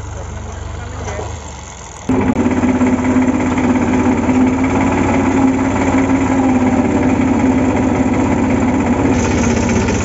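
New Holland 3630 TX Super tractor's three-cylinder diesel engine running while it pulls a rear levelling blade through the soil. It is heard from a distance at first, then about two seconds in it jumps much louder and closer, heard from the driver's seat as a steady low drone with an even pulse.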